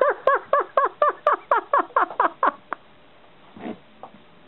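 Pet rat squealing in a scuffle with a rabbit: a quick run of about eleven short squeaks, each falling in pitch, about four a second, trailing off after two and a half seconds.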